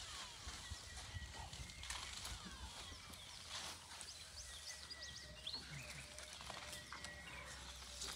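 Faint outdoor bush ambience: many short bird chirps and whistles, some falling in pitch, over a low steady rumble.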